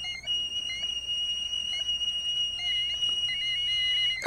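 A steady, high-pitched electronic tone from the piece's music and sound bed, held without change, with a fainter wavering tone and a few short chirps beneath it.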